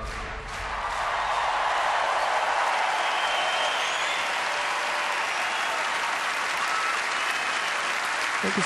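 Large arena audience applauding, building up within the first second and then holding steady.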